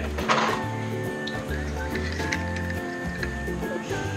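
Background music: sustained notes over a bass line that changes note every half second or so.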